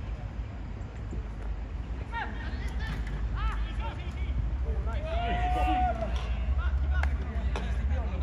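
Distant shouts and calls from football players across the pitch, short and scattered, with one held shout about five seconds in. A steady low rumble runs underneath, and a couple of sharp knocks come near the end.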